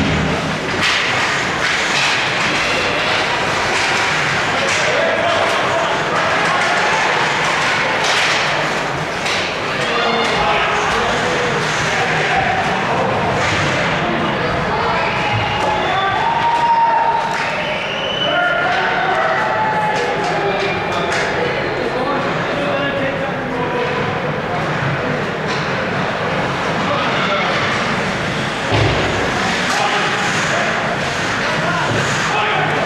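Live ice hockey game sound: many spectators' voices and shouts, with scattered knocks and thuds of sticks and the puck against the boards, and a heavier thud near the end.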